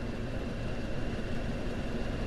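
Steady outdoor background noise: a low rumble with a hiss, and no distinct events.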